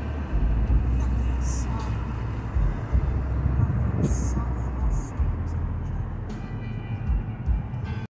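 Road and tyre noise inside the cabin of a moving Tesla electric car: a low, uneven rumble with no engine note.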